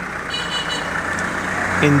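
Vehicle noise heard from inside a car: a steady low rumble with a rushing sound that grows slightly louder over the two seconds. A faint high tone sounds briefly about half a second in.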